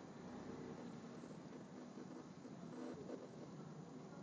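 Quiet room tone: a faint, steady background hiss with no distinct event.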